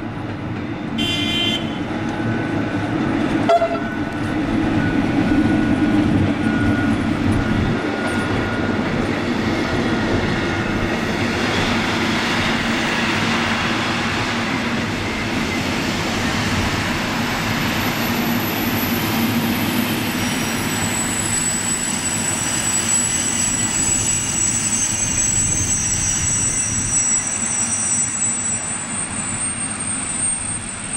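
MÁV/GYSEV class V43 'Szili' electric locomotive bringing a passenger train into a station. It gives a short horn toot about a second in, then the coaches roll past with a steady rumble. From about twenty seconds in a thin, high steady squeal sets in as the train brakes to a stop.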